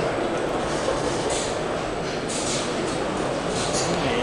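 Steady murmur of a crowded exhibition hall: many voices blurring together with the hall's echo, no single voice standing out.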